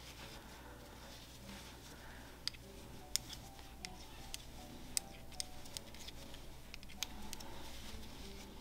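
Quiet background music with several sharp, scattered clicks of metal knitting needles tapping together as stitches are worked.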